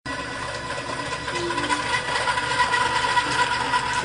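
WeldROVER motorized weld-inspection scanner driving on its magnetic wheels along a steel pipe: a steady motor-and-gear whine with a clear high tone.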